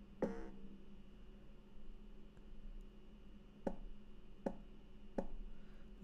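Faint computer mouse clicks: one just after the start, then three more in the second half, a bit under a second apart, over a low steady hum.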